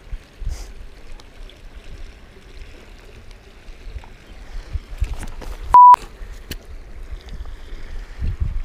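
A short, steady, high beep of a single pitch about six seconds in, much louder than anything else, with the other sound cut out around it: a censor bleep laid over a word. Around it there is only a low rumbling background and a few faint clicks.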